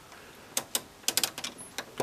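A run of about a dozen sharp, irregular clicks, starting about half a second in and bunching together around the middle.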